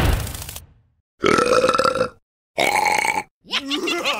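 Cartoon voice effects: the tail of a crash fades out at the start, then a character gives two long burps, and laughter begins near the end.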